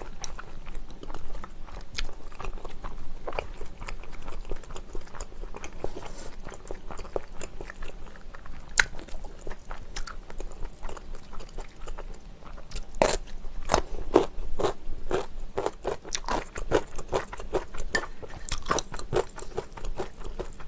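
Close-miked chewing and biting: soft, wet chewing of spicy noodles, then a run of sharp crunches in the second half as radish kimchi is bitten and chewed.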